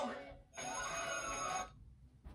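Television commercial audio from a TV set: a bright, high, ringing sound effect lasting about a second that stops abruptly.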